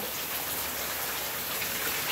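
A steady hiss at a moderate level, even and unchanging, with no speech over it.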